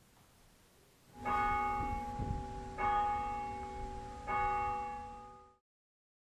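Church bell struck three times, about a second and a half apart, each stroke ringing on over the last before the sound fades and cuts off.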